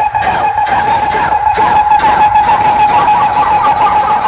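Loud music from a DJ roadshow's large speaker rig: a sustained high, steady tone held over a regular beat.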